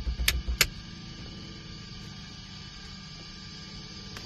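Two sharp clicks, like cockpit toggle switches being flipped, with some low thumps, about half a second in; then a steady faint electrical hum from the light plane's powered-up electrical system with the master switch on.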